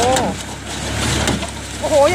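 Massey Ferguson 20 square baler running while baling straw, driven by a tractor: a steady mechanical drone with a low, even pulse, and a few sharp knocks from the baler's mechanism.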